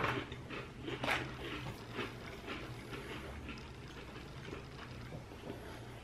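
Faint, crisp crunches of sandwich cookies being chewed, about one a second at first and then fading away, over a steady low hum.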